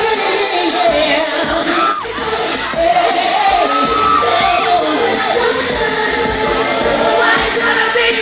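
Female R&B/pop vocal group singing live into microphones over loud amplified backing music, with long held and sliding sung notes.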